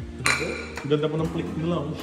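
A ceramic plate clinks once against a stone countertop about a quarter second in, with a brief ringing after it.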